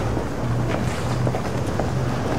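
Steady city-street background noise: a low hum under an even rush, with a few faint clicks.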